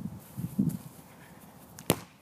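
A bare foot kicks a soccer ball once near the end, a single sharp thud. A short 'ow' cry comes about half a second in.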